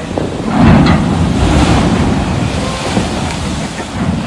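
Strong storm wind buffeting the microphone, with surf and blowing rain, swelling to a gust about half a second in.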